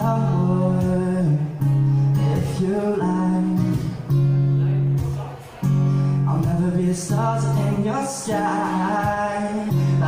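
Live acoustic guitar strummed in steady chords, the chord changing every couple of seconds, played with a male voice singing at times.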